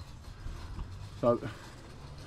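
A man says one short word over a faint, steady low rumble in the background.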